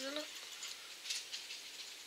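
Small irregular glass nail-art stones rattling faintly inside the compartments of a plastic nail-art wheel as it is handled and turned, in scattered light ticks.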